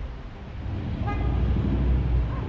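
Street traffic: a vehicle's low running sound growing louder, with one short car-horn toot about a second in.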